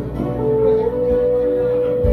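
Instrumental gap in a song: a guitar being played over a backing accompaniment, with a long steady note held from about halfway through.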